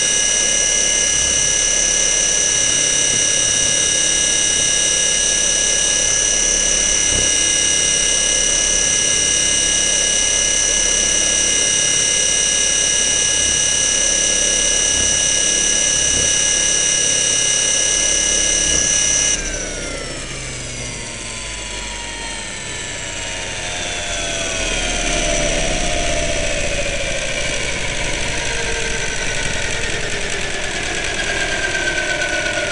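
The motor of a radio-controlled model aircraft, heard from its onboard camera: a loud, steady high-pitched whine. About nineteen seconds in it drops in level and the pitch slides steadily down over the following seconds as the motor and propeller or rotor wind down after landing.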